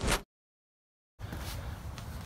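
Near silence: the end of a spoken word, then a dead-silent gap of about a second at an edit, then faint steady background hiss from the next clip.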